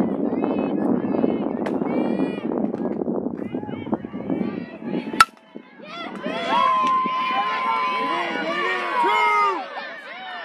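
A softball bat strikes a pitched ball with a single sharp crack about five seconds in, after a steady hubbub of voices. Right after the hit, high-pitched shouts and cheers break out and carry on for several seconds.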